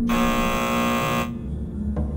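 Harsh electronic alarm buzzer sounding for a little over a second, then cutting off abruptly, over a low steady drone.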